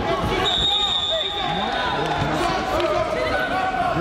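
Many voices of spectators and coaches calling out at once in a large hall during a wrestling bout, with thuds mixed in. A high steady tone sounds from about half a second in for about two seconds.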